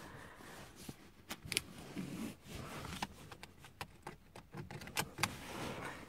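Car seatbelt being worked through a car seat: faint rustling of the webbing with scattered small metallic clicks and clinks from the latch plate.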